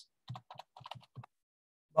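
Typing on a computer keyboard: a quick run of about seven or eight keystrokes within just over a second, entering a single word.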